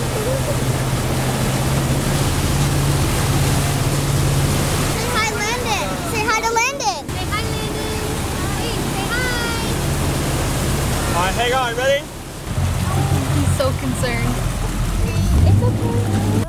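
Wake boat under way: a steady engine hum under the rush of wake water and wind. High children's voices call out a few times over it.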